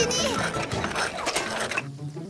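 Rapid mechanical clicking and rattling, a cartoon sound effect, fading out near the end.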